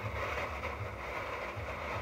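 Thin plastic bag rustling and crinkling as it is handled and rummaged through, with low dull bumps of handling.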